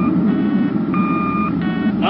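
Sci-fi sound effects: a steady low rumble of a rocket ship's engine, with an electronic signal over it alternating between a clean beep and a buzzier, many-toned beep, each lasting about half a second.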